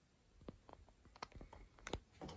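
A series of faint, sharp clicks and light taps over near-silent room tone, starting about half a second in, coming closer together and loudest near the end.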